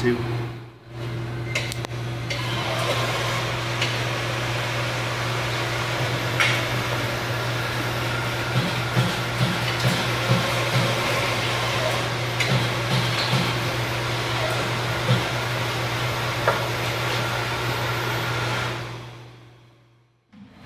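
MBM Aerocut G2 programmable print finisher running, with a steady hum from its motors and air feed and a run of short, regular clacks in the middle as its cutters work through the sheets. The sound fades out near the end.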